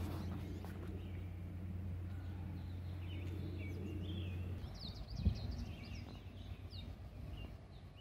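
Small birds chirping over a low steady hum, which stops a little past halfway through; a single thump about five seconds in.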